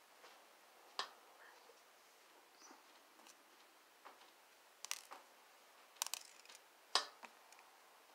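Scattered small clicks and taps from handling earring parts and a clear plastic kit box, a few at a time, the sharpest about a second in and near seven seconds.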